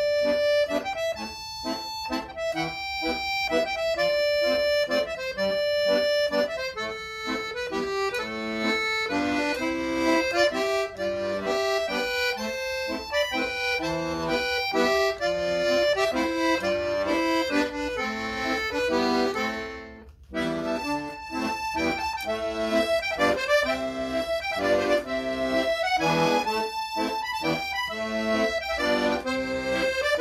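Solo piano accordion playing a Scottish traditional tune, a melody line over a steady bass-and-chord accompaniment, with a brief break in the sound about two-thirds of the way through.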